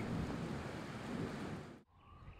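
Steady hiss of rain falling outdoors at night, fading out shortly before the end.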